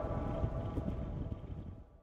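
A low, gusty rumble of wind on the microphone, with the tail of background music, fading out steadily to silence by the end.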